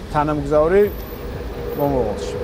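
A man speaking, with a steady low hum underneath.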